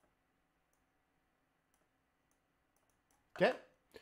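Quiet room with a faint steady hum and a few faint clicks, then, about three and a half seconds in, a man's short wordless vocal sound falling in pitch, followed by a brief click.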